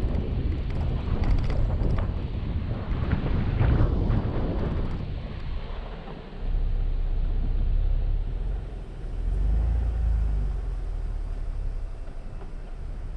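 A vehicle driving along a gravel dirt road: a steady low rumble with wind noise on the microphone, and rougher road and tyre noise for the first five seconds. After a brief dip about six seconds in, it settles to a smoother low rumble.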